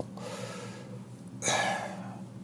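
A man breathing in a pause of his talk: a faint breath, then a louder, sharp intake of breath about one and a half seconds in.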